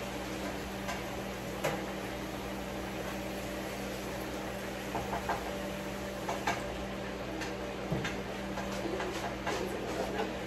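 Steady low kitchen hum with scattered light clicks and clatter of dishes and utensils being handled at the counter and sink, coming more often in the second half.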